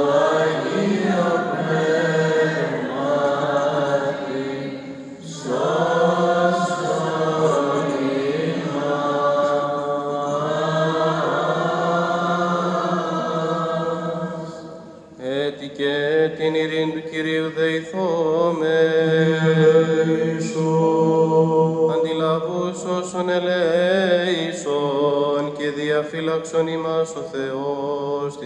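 Byzantine chant of a Greek Orthodox service: male voices sing a melody over a steady low held note. Two brief pauses between phrases come about five and fifteen seconds in.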